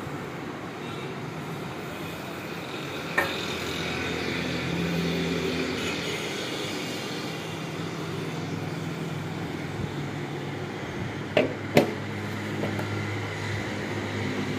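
A few sharp knocks and clicks from an electric dry iron and its cardboard box being handled: one at the start, one about three seconds in, and two close together near the end. A steady low background hum runs under them.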